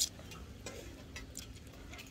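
Faint, irregularly spaced light clicks and soft rustling: handling noise from a phone held against a cotton T-shirt.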